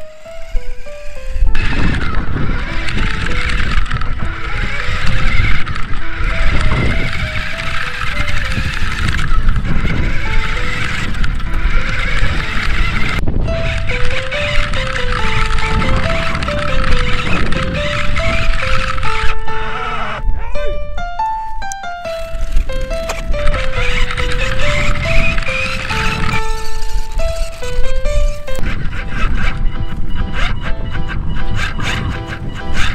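A simple synthesizer melody of stepped single notes, the tune being played to steer the car, with a short quick run of notes about two-thirds of the way in. Under it runs the steady whirr of a Tamiya Grasshopper RC buggy's electric motor and its tyres on gravel, with a low rumble of wind.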